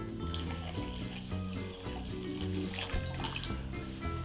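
Warm water poured from a small glass jug onto dry bulgur in a glass bowl, trickling in to soak the grain. Soft background music with sustained notes plays throughout.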